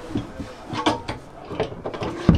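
A hinged fold-out table panel being lifted and set into place, giving a few light knocks and clicks, the clearest near the middle and just before the end.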